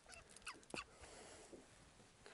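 Near silence: a faint steady hiss with two or three brief, faint squeaks or clicks in the first second.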